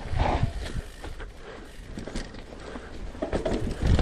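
Alloy Santa Cruz Bronson V3 mountain bike rolling down a rooty dirt trail, with scattered knocks and rattles from the bike as it goes over the bumps, and a heavier thump near the end.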